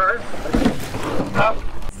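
Rowing shell under way: water splashing and rushing from the oar blades and hull as the crew pulls, with a brief voice call near the end.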